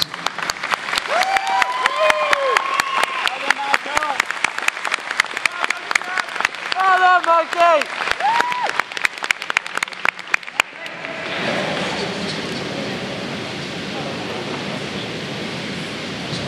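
Audience clapping and cheering, with shouted calls rising over the claps. The applause stops abruptly about ten and a half seconds in, leaving a steady, even noise.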